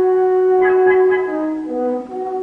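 A brass instrument sounds a call: one long held note, then steps down to lower notes near the end.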